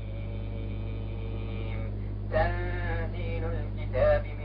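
A man chanting Quranic verses in long, drawn-out tones, with one sustained chanted phrase a little past two seconds in. A steady electrical hum runs underneath.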